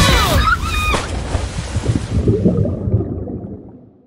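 The end of a pop song, cut off about a second in, gives way to swimming-pool water splashing and sloshing, which fades out near the end.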